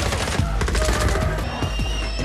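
Action-film soundtrack: music over a fight scene, with a rapid run of short hits and impacts.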